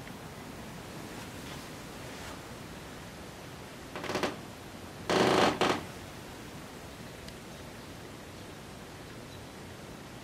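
Quiet room tone with a steady low hiss, broken by two brief rustling noises about four and five seconds in, the second louder.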